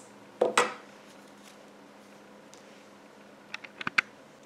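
Scissors cutting plastic canvas: one short snip about half a second in, then a few light, sharp clicks near the end.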